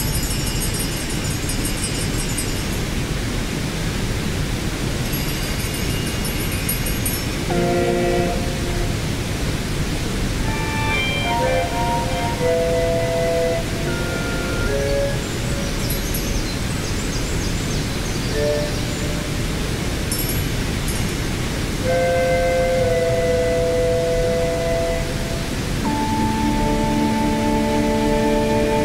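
Electric melodica (Hammond Pro-44) played through effects and an amplified speaker: sparse held chords and a scatter of short single notes, with gaps between. Under it the steady rush of a waterfall.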